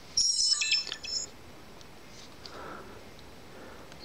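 SJ4000 action camera's power-on jingle: a short run of high electronic tones lasting about a second, right at the start, then quiet.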